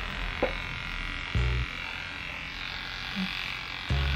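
Electric hair clippers running with a steady buzz while shaving a head, with a brief low thump about one and a half seconds in.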